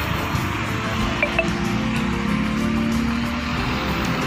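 Background music with long held notes, no speech.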